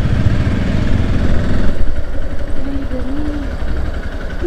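Motorcycle engine running at low speed as the bike rolls in, easing off toward idle in the second half.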